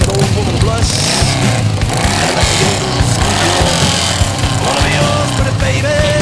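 Rock music playing over people's voices, with motorcycle engines running underneath.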